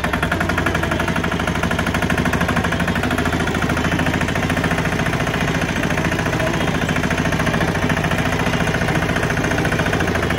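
Single-cylinder diesel engine of a 12 hp two-wheel 'pat pat' tractor running steadily while driving, its exhaust a rapid, even put-put.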